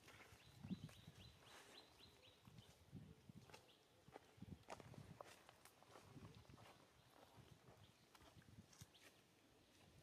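Near silence with faint, scattered crackles and soft thumps of dry leaf litter as macaques shift on the ground. A faint high steady tone sounds in the first two seconds or so.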